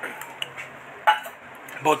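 Light metallic clinks from a stainless steel drinking tumbler being handled. There are three short clinks, the sharpest about a second in.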